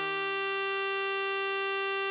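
Electronic (MIDI) playback of a tenor sax tutorial melody: one long, steady held note, written A5 for tenor sax, over a low sustained Eb bass note of an Eb major chord. The tone does not waver or decay.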